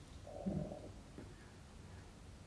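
Quiet room tone with a faint low rumble, and a brief soft sound about half a second in.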